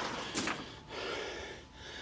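A man breathing close to the microphone: a short breath about a third of a second in, then a softer, longer exhale that fades around a second and a half in.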